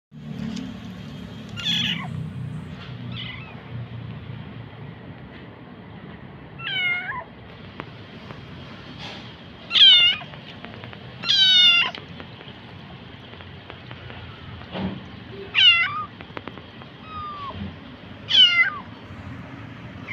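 A calico kitten meowing loudly, about six high-pitched cries spaced a few seconds apart, with fainter mews between them. They are the cries of a kitten in pain from a swollen hind leg.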